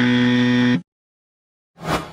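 Electronic buzzer sound effect: one loud, steady buzz lasting under a second that cuts off abruptly. Near the end comes a short, sharp sound that fades away.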